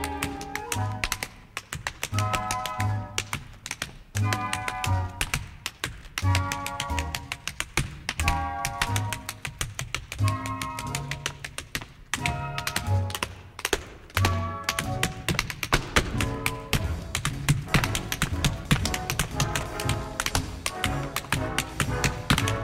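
Show-tune orchestra playing an instrumental dance break, with rapid tap-dance taps over the music that grow busier in the second half.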